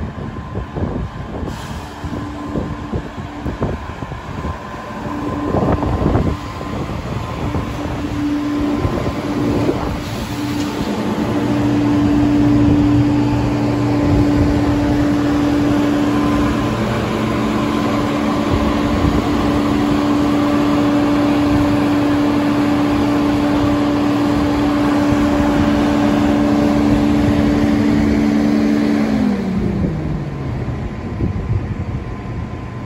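Eurostar Class 373 high-speed electric train running in slowly alongside the platform: wheel and running noise with a steady electrical hum from its power car that grows louder a third of the way in as the power car draws near. Near the end the hum falls in pitch as the train slows.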